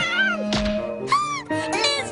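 Short cartoon cat cries that rise and fall in pitch, several in a row, over background music.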